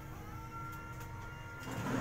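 Hand-washing laundry: a wet cloth briefly sloshed and rustled in a plastic bucket of water near the end, over a steady background hum.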